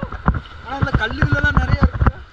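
Water splashing and sloshing around a person wading through a shallow river, in a quick run of short splashes. A man's voice comes in about a second in.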